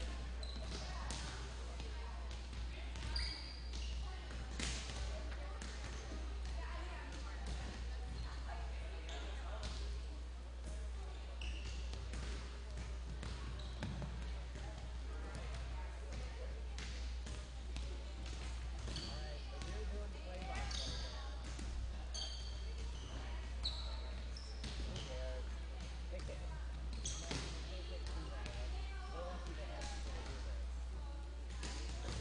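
Volleyballs being hit and bouncing on a hardwood gym floor during warm-up: scattered irregular smacks and bounces, with a few short high squeaks from shoes and indistinct voices in a large gym. A steady low hum runs underneath.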